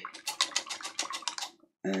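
Paintbrush rattling against the sides of a brush-water pot as a brush is rinsed and swapped: a rapid run of light clicks, about eight a second, stopping about a second and a half in.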